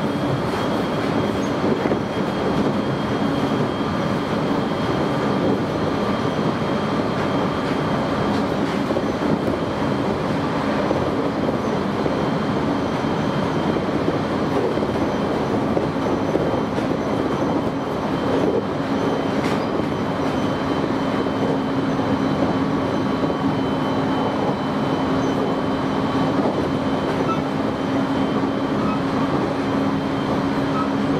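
A JR East Jōban Line train running steadily at speed, heard from inside the carriage: the even rumble of wheels on rail under a constant low hum and a faint high whine.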